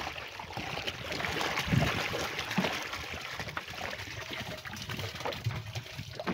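Water pouring and splashing out of a rubber bucket fish trap into the river as it is emptied over the side of the canoe, loudest about two seconds in.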